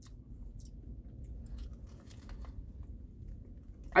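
A person chewing a mouthful of meatball sub, with faint soft mouth clicks over a low, steady background rumble.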